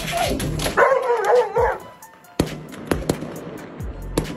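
A dog gives a wavering, excited vocal sound for about a second, reacting to fireworks. This is followed by several sharp pops of fireworks going off, over background music.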